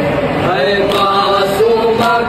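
A group of voices chanting an Urdu noha, a Shia lament, together without instruments, holding long, sliding notes.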